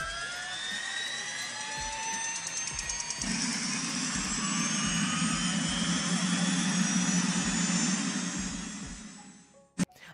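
The gas-turbine engine of an MTT Turbine Superbike, a Rolls-Royce aircraft-type turbine, spooling up with a whine that rises steadily in pitch. About three seconds in, a deeper rush joins the whine, and the whole sound fades out near the end.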